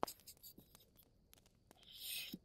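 A sharp click on the desk, then a few faint ticks of paper being handled; near the end a writing tool starts a scratchy stroke across paper.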